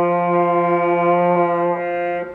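Trombone holding one long steady note, the F below middle C, the middle note of a beginner's first exercise. It dips slightly in level near the end.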